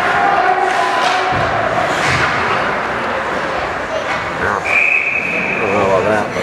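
Ice hockey rink sounds in a large arena: knocks of sticks and puck on the ice and boards, with voices. Past the halfway point a referee's whistle is blown once, a steady shrill tone held for over a second.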